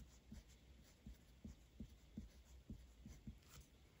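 Pen writing on paper, faint: light scratching strokes with about ten soft taps as the tip meets and leaves the page.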